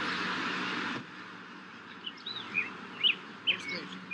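Birds chirping: a string of short, high chirps through the second half, over a steady hiss that drops away after the first second.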